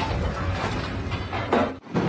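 Wrecking ball swung on a chain by an excavator, smashing into concrete rubble: crashing and clattering of breaking concrete, with another crash about one and a half seconds in.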